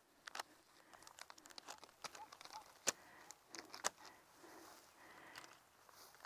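Faint rustling and a few soft clicks from elastic loop resistance bands being pulled off the legs, the sharpest click about three seconds in.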